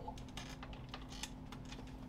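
Faint, scattered light clicks and rustling of a person moving about and picking something up.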